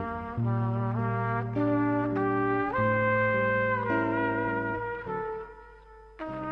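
Recorded instrumental jazz: a trumpet playing a slow melody of long held notes over other brass, the music dropping away briefly near the end.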